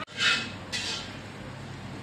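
Two short slurps, the louder one first, as thin fried noodles are sucked in from a fork, over a steady low hum.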